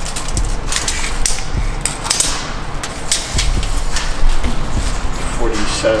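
Irregular clicks and scrapes from a steel tape measure being handled and moved over a hard floor, with people shifting around it.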